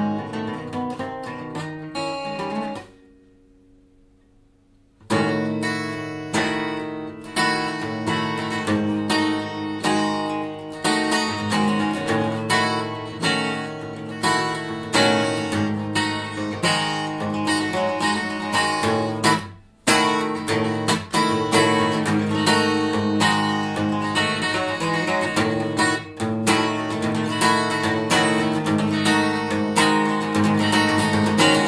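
Takamine ETN10C cutaway acoustic guitar played fast, with strummed chords and picked notes in a busy rhythm. About three seconds in, the playing stops for roughly two seconds, leaving a few notes ringing faintly. It breaks off again for an instant about two-thirds of the way through.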